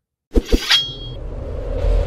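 Sound effects of a channel logo intro sting: two sharp knocks in quick succession, a short high ringing chime, then a steady low rumble.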